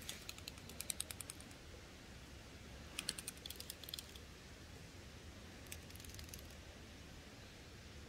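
Dry leaf litter and twigs crackling in short runs of quick, light clicks, twice in the first four seconds and once more briefly a little later, as they are disturbed close to the microphone.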